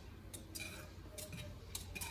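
Wire whisk stirring a hot liquid in a metal saucepan, giving a few faint, irregular clinks and ticks against the pot.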